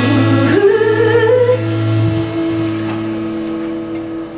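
The close of a live acoustic ballad: a female voice glides up into a long held note over guitar, and then the final chord rings on and fades away.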